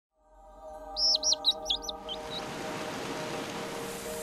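A small bird chirping a quick run of about six notes, then two fainter chirps, over a soft sustained music chord that fades in. A wash of hissing noise swells up beneath the music after the chirps.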